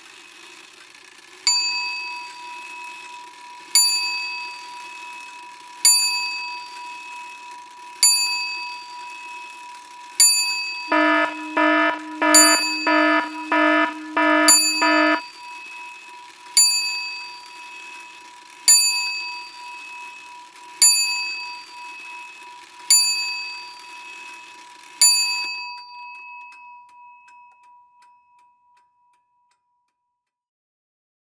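A bell rung about every two seconds, each ring dying away. About halfway through there is a quick run of about seven rings, and the sound fades out near the end.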